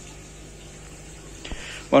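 Low, steady background noise with a faint hum, a small click about one and a half seconds in, then a man begins speaking at the very end.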